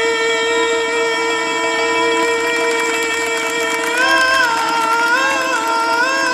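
Male vocalist holding one long steady note of an Arabic folk song, then breaking into wavering melismatic ornaments about four seconds in, over Middle Eastern ensemble accompaniment with violins.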